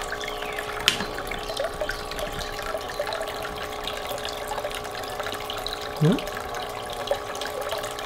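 Small hang-on-back aquarium filter returning a steady trickle of water into a plastic tub, with a steady hum under it. A single sharp click sounds about a second in.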